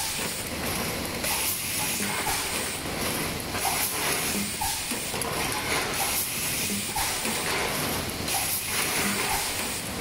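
Full-electric 4-cavity PET blow moulding machine running its production cycle: a steady hiss of compressed air under the clatter of the mechanisms, with short blasts and clicks recurring about every two and a half seconds.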